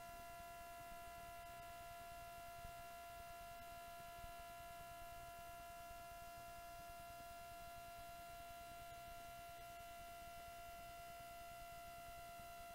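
Near silence, with a faint, steady electrical whine: one constant high tone with fainter overtones, unchanging throughout.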